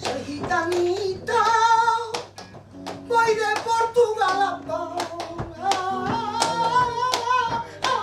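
A female flamenco singer (cantaora) sings a long, wordless melismatic line, holding notes with a wide vibrato, over sharp rhythmic palmas hand-clapping.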